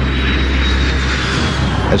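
Jet aircraft flying past: a steady rush with a deep rumble and a thin high whine that falls slowly in pitch.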